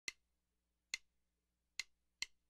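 Three short, sharp count-in clicks, evenly spaced, one every other beat of a 140-per-minute swing tempo, counting in the jazz karaoke backing.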